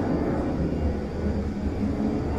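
Airplane flying overhead: a steady low rumble.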